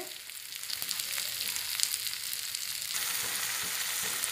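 Onion paste and ground spices sizzling in oil in a non-stick kadhai, with small scattered crackles as it is stirred. About three seconds in, the sizzle becomes fuller and louder.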